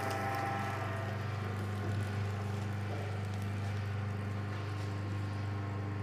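Electric sugarcane juice machine running, its motor giving a steady, even hum.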